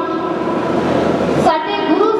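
A woman's voice singing long, held notes into a microphone, sliding slightly into each note; one held note breaks off and a new one begins about one and a half seconds in.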